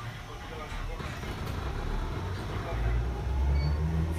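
Nose-suspended (tsurikake) traction motors of a Chikuho Electric Railway 3000-series car growling as it accelerates, the low tone rising in pitch and growing louder over the few seconds.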